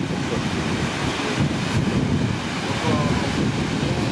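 Wind buffeting the camera microphone, with the rushing wash of surf on a beach beneath it.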